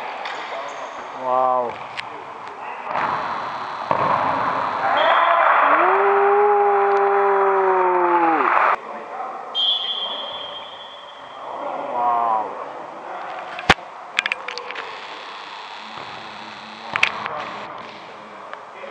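Sounds of a futsal match in a sports hall: voices shouting, with one long drawn-out shout of about three seconds over a burst of noise that cuts off suddenly, then sharp knocks of the ball being kicked later on.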